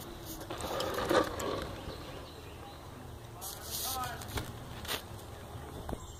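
Faint, indistinct voices in the background, with a few sharp clicks and knocks from the phone being handled.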